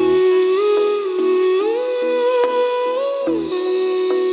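Recorded Hindi patriotic song: a voice hums the melody in long held notes that rise and fall, over a soft repeating accompaniment. A low drum beat lands near the start and again about three seconds in.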